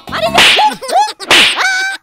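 Two loud, whip-like slaps across the face about a second apart, each followed by a short cry.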